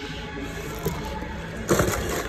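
Handling noise from a metal hex dumbbell moved by hand, with a short scraping clatter near the end.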